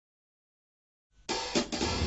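Silence for just over a second, then music cuts in suddenly, led by a drum kit with hi-hat, cymbals, snare and bass drum.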